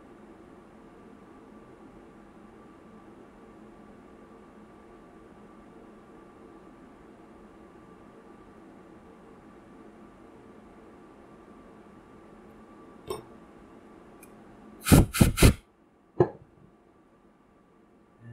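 A steady faint hum with a thin whine, then a click and, about three seconds before the end, a quick run of three loud sharp knocks followed by one more click; the hum drops away after the knocks.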